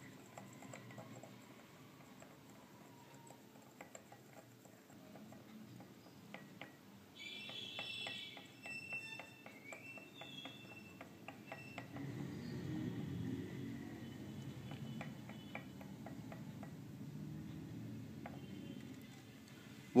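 A thin wooden stick stirring water in a drinking glass, ticking lightly and repeatedly against the glass wall. A low rumble swells briefly around the middle.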